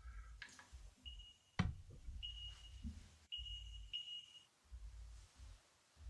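Quiet horror-film soundtrack: a low hum, a couple of soft clicks, and a faint high steady tone that sounds on and off, stopping about four and a half seconds in.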